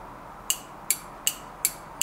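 Automatic transmission solenoid clicking each time it is switched on and off from a 12-volt car battery: about four sharp clicks, evenly spaced a little under half a second apart. The clicking shows the solenoid is working, since a broken one makes no sound.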